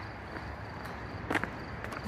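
Footsteps on a gravel driveway, a few soft crunches about half a second apart, over a low steady background rumble.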